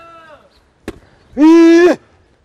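A ball is struck once with a sharp knock about a second in, then a man lets out a loud, held shout of about half a second.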